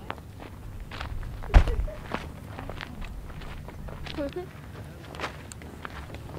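Footsteps on a dirt hillside, irregular steps with the sharpest one about one and a half seconds in.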